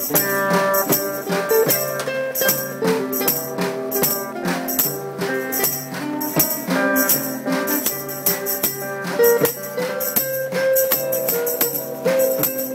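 Live band music: electric and acoustic guitars strumming chords over a small drum kit, with cymbal and drum hits keeping a steady beat.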